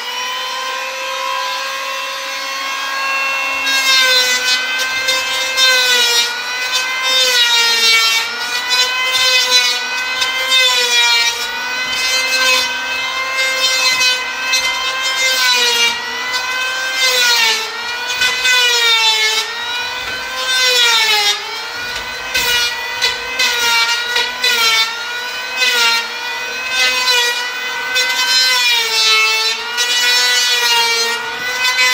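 Handheld electric power plane planing wooden hull planking. The motor comes up to speed at the start, then its whine drops in pitch each time the blade bites into the wood and rises again between strokes, every second or two. A hiss of chips comes with the cuts.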